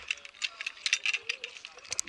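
Irregular metallic clicking and rattling of rope-course safety gear, carabiners and lanyard hardware, knocking against the steel cable.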